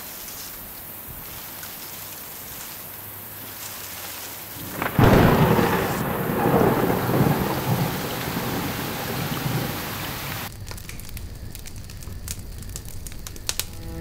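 Steady rain with a sudden loud thunderclap about five seconds in that rumbles on and fades over several seconds. Near the end the rain gives way to the sharp crackle of a wood fire.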